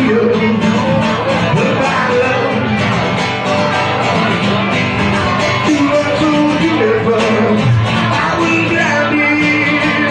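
Live song: a man singing while playing an acoustic guitar through a microphone.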